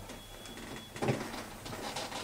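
A pause with room tone and a faint high electronic whine, broken about a second in by a short bump and rustle of a handheld microphone being handled.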